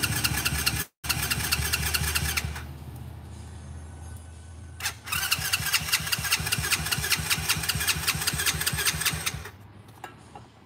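Small single-cylinder ATV engine kick-started and running rough in two short spells. It runs for about two and a half seconds, drops away, catches again after a click about five seconds in, and fades out near the end: it is not staying running.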